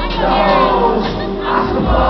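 A large concert crowd cheering and shouting over loud live rap music.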